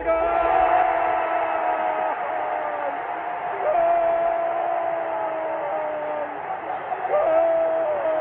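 A slow sung melody in long held notes, each lasting a couple of seconds and stepping in pitch, over the noise of a large crowd. The sound is thin, with no treble.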